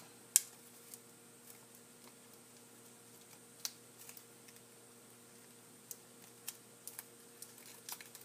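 Faint, scattered clicks and crinkles of a small folded paper origami model being pinched and pulled open with fingertips and fingernails, the sharpest click about half a second in. A faint steady hum runs underneath.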